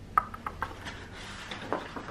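Light clicks and taps of small craft pieces being picked up and set down on a craft mat, with some paper rustling. The sharpest click comes just after the start, followed by several smaller taps.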